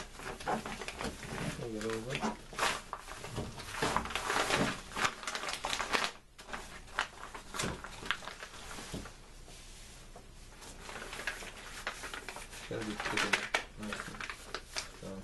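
Tarp material being handled and folded: irregular crinkling and rustling, busier in the first half and sparser after.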